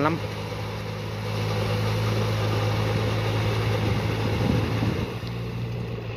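Yanmar 494 tractor's diesel engine running steadily, with a constant low note, as it pulls a rotary tiller through flooded paddy mud on steel cage wheels. It grows a little louder about a second in.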